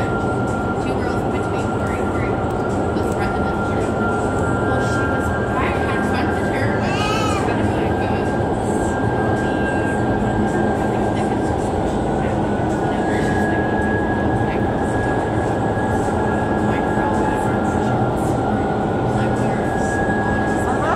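Indoor skydiving vertical wind tunnel running at flying speed: a loud, steady rush of air with a thin, constant high whine.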